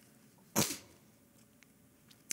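A single short, noisy breath sound from a man, about half a second in, fading quickly.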